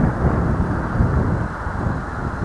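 Wind buffeting the microphone: an uneven low rumble over a steady hiss.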